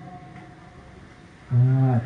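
Male voice singing a Thai lae, the drawn-out chanted sermon style: a held note fades away, a short pause follows, and about one and a half seconds in a new long low note begins.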